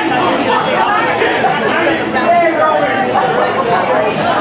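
Steady chatter of many people talking at once in a crowded room, with no single voice standing out.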